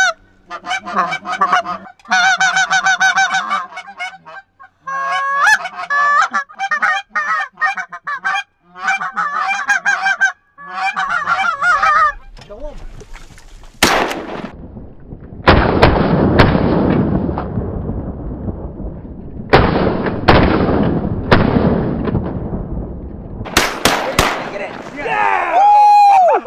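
A flock of Canada geese honking as they come in. About halfway through, a string of shotgun blasts goes off over roughly ten seconds as the hunters shoot at the geese.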